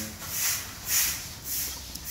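Soft rustling and scraping swells, about three in quick succession, from concrete tiles being handled against their cardboard packing box.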